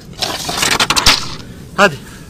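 Scraping and rustling noise with a few sharp cracks, lasting about a second, then a man calls "hadi" (come on) near the end.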